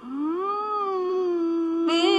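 A woman singing one long held note that slides up at the start and then stays level.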